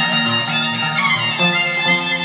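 Violin playing a lively tune over plucked-string notes that change about every half second: the traditional music of the Andean scissors dance (danza de las tijeras).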